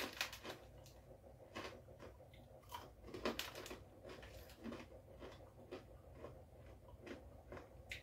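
Faint, irregular crunching of a barbecue pork scratching being chewed.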